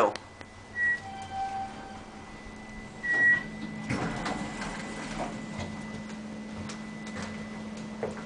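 Otis traction elevator cab: a short high electronic tone, then a lower tone held for under a second, then a louder high tone about three seconds in. After it comes a steady low hum with scattered light clicks from the running car and its buttons.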